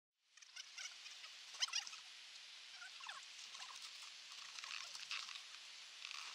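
Snow squeaking and crunching, with small clicks and scrapes of a snowboard and its bindings being handled, over a steady high hiss. The loudest moment is a quick run of clicks about a second and a half in.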